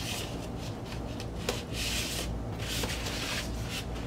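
Paper insert and sleeves sliding against a shrink-wrapped vinyl record jacket as they are put back in: three rubbing swishes, with a light tap in between.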